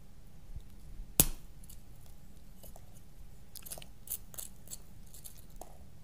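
A dried sand dollar shell snapped in half by hand: one sharp crack about a second in, then a few faint ticks and crackles as the brittle broken pieces are handled.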